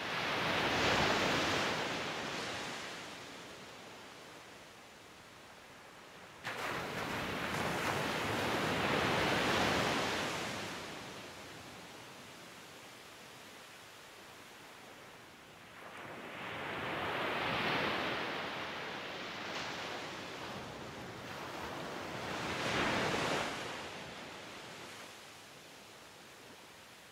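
Ocean waves breaking and washing in as slow, repeated swells of surf, four in all, each rising and falling over a few seconds. The second comes in suddenly about six seconds in.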